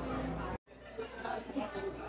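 Indistinct chatter of several people talking in the background. The sound cuts out completely for an instant about half a second in, then the chatter resumes.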